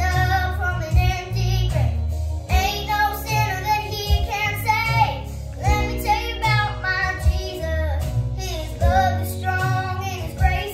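A nine-year-old girl singing a worship song, holding notes with vibrato, over instrumental accompaniment with a steady bass line.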